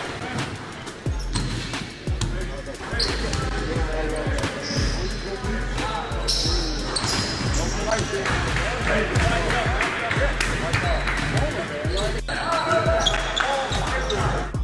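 Basketballs bouncing repeatedly on a hardwood gym court, with players' voices and chatter. Music with a steady bass runs underneath.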